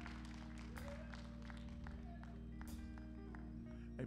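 Soft church keyboard music playing long held chords, with a few scattered hand claps.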